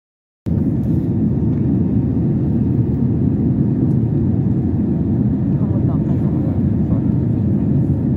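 Jet airliner cabin noise in flight: a steady, loud, deep rumble of engines and airflow heard from a window seat. It starts suddenly about half a second in.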